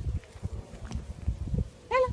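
A shaggy black-and-white dog nosing at a wire-mesh fence, with irregular short low rustles and a short, high, arching whine near the end.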